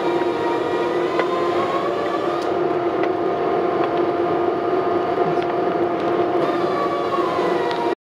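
A steady machine drone made of several held tones, one of them wavering slightly in pitch, with a few faint clicks.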